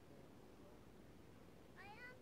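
Near silence, then near the end a single short, meow-like call that rises and then falls in pitch: a gull calling.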